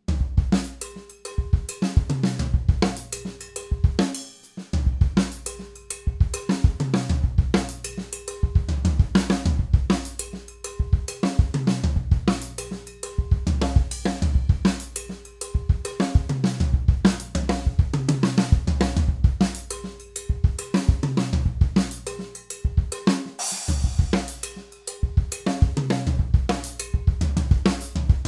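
Acoustic drum kit playing a funk groove on cowbell, toms, kick and snare at a brisk tempo, the pattern repeating about every two seconds with small variations. A cymbal crash rings out about three-quarters of the way through.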